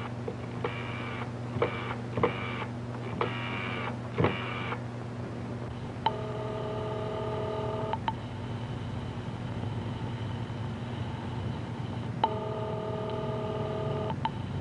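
Telephone signal tones heard from a receiver held to the ear: about six short buzzy tones in the first five seconds, then a steady multi-pitched ringing tone of about two seconds with a click at each end, repeated about six seconds later. A steady low hum runs underneath.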